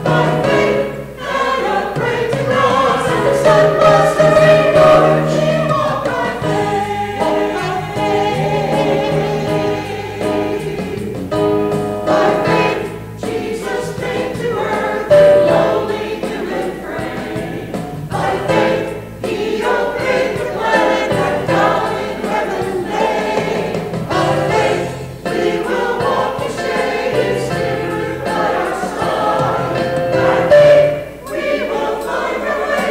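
Mixed church choir of men and women singing together, sustained sung lines carrying on without a break.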